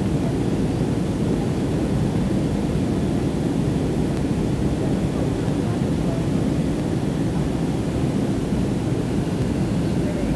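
Steady low noise of a jet airliner's engines and airflow, heard inside the passenger cabin in flight.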